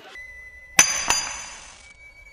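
A sharp, bright clink about a second in that rings on with several high tones and fades over about a second, followed at once by a second, lighter clink.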